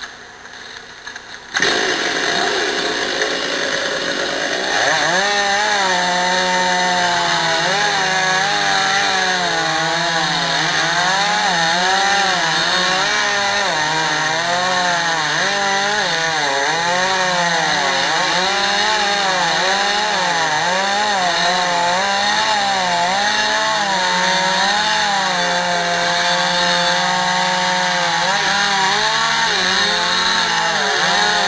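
Two-stroke chainsaw cutting into a large cedar trunk. It comes in suddenly about a second and a half in, and its engine pitch keeps rising and falling as the bar loads and frees up in the wood.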